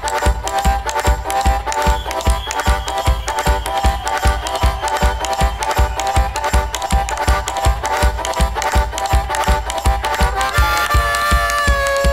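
Live band playing a song: a fast, steady low drum beat under held melody notes, with a new, higher held note coming in about ten seconds in.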